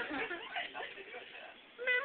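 Faint laughter and voices trailing off to a near hush, then near the end a voice starts one long held note that falls slightly in pitch.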